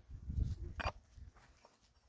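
A long-handled digging tool striking stony ground once, sharply, just before a second in, with a few lighter scrapes and knocks of soil and stones after it, over a low rumble.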